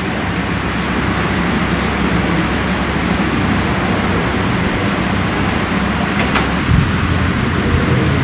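Steady indoor background noise, a low hum under an even hiss, with a couple of brief clicks about six seconds in.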